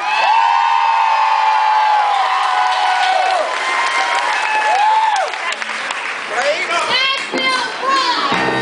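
Concert audience cheering and applauding, with a long held whoop lasting about three seconds, a shorter rising-and-falling whoop around five seconds in, and a few short shouts near the end.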